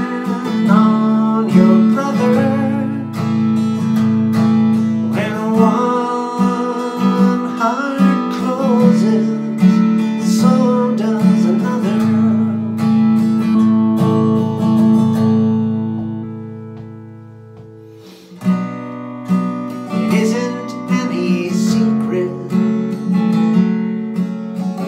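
Acoustic guitar strummed in steady chords. About two-thirds of the way through, the chords are left to ring and fade away, then a strong strum brings the playing back in.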